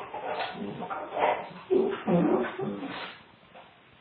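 Two dogs play-wrestling, making a run of short vocal bursts that die away near the end. Heard through a home security camera's microphone, which cuts off the high end.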